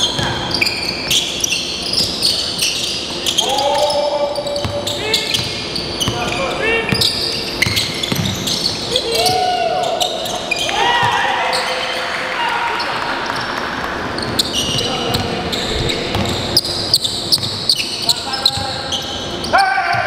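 Basketball game sounds on a hardwood gym court: the ball bouncing as it is dribbled, many short sharp knocks, with sneakers squeaking on the floor and players' voices calling out.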